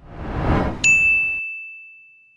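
Logo-reveal sound effect: a whoosh swells for under a second, then a single bright, high ding strikes and rings out, fading slowly as the whoosh cuts off.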